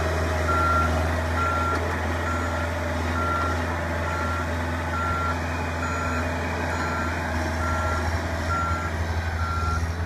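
Reversing alarm on a small hive-loading forklift, beeping in a steady, even rhythm a little faster than once a second. The forklift's engine runs steadily underneath.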